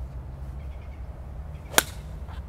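Golf iron striking the ball cleanly, a single sharp crack near the end. It is a compressed, ball-first strike that takes a divot just past the ball.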